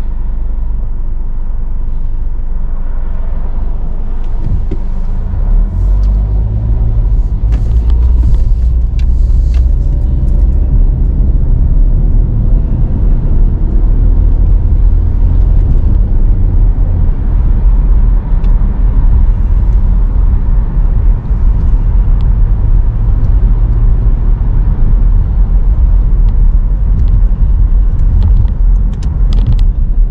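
Car driving, heard from inside the cabin: a steady low rumble of engine and road noise that grows louder about five seconds in. A faint whine rises in pitch as the car picks up speed.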